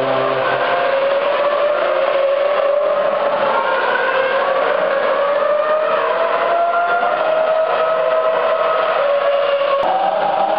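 Formula One cars' engines running at the circuit, several engine notes heard at once, their pitch slowly rising and falling.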